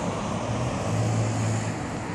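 Street traffic noise: a steady wash of road sound with a low engine hum underneath that swells a little for about a second in the middle.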